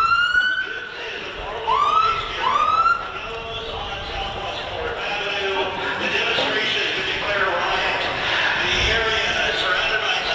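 Police vehicle siren giving three short rising whoops in the first three seconds, the last two close together, followed by steady crowd and street noise.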